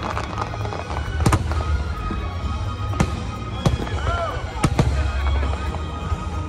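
Aerial fireworks shells bursting overhead: about five sharp bangs at irregular intervals, two of them close together near the end, over a steady low rumble.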